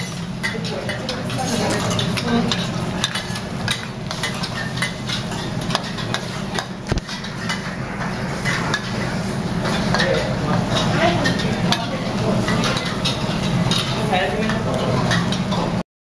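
A spatula stirring and scraping a thick sauce around a black wok, with frequent short clicks and scrapes against the pan over a steady low background hum.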